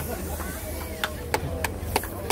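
A camera shutter firing in a quick burst, sharp clicks about three a second starting about a second in, over low crowd chatter.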